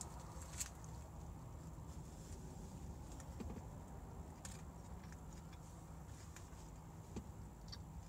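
A person chewing a mouthful of bacon cheeseburger, faint chewing with a few soft clicks over a low steady hum.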